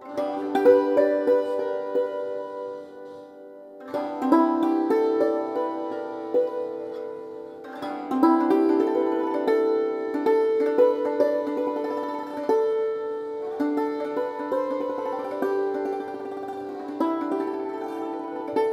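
Santoor struck with light wooden mallets, playing raag Pahadi in phrases of quick, repeated notes that ring on. The music eases off twice and a fresh phrase starts about four and about eight seconds in.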